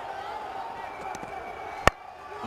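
Cricket bat striking the ball once, a single sharp crack near the end, over steady background stadium noise.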